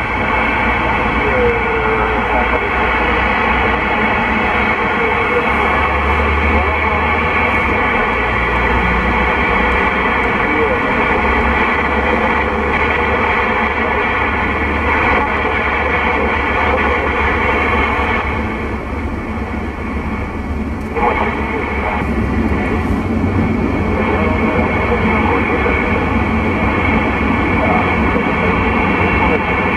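A President Lincoln II+ CB radio receiving on AM: steady static from the set's speaker, with faint voices of other stations in it. The car's low road rumble runs underneath.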